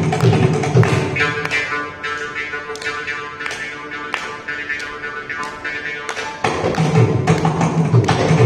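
Mridangam playing dense strokes with a deep bass head, which drops away after about a second while the morching (South Indian jaw harp) plays a twanging rhythmic passage. The mridangam comes back in loudly about six and a half seconds in, with the morching under it.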